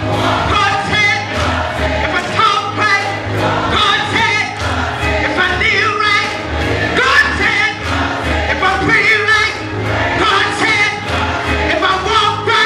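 Gospel choir singing with organ accompaniment and a steady low bass line underneath.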